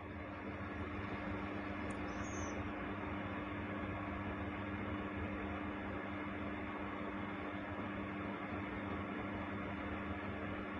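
Quiet, steady background hiss with a low, even hum, unchanging throughout: the room's background noise while nobody speaks.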